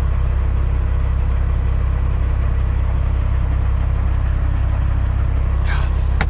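Semi truck's diesel engine running steadily, heard from inside the cab as a constant low drone.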